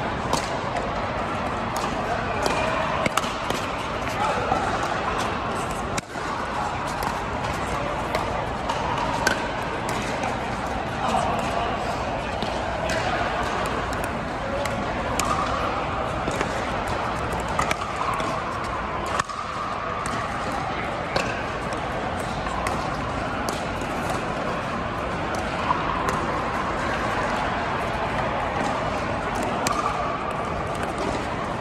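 Pickleball play in a large indoor hall: repeated sharp hits of paddles striking the plastic ball, over a steady wash of indistinct voices from around the hall.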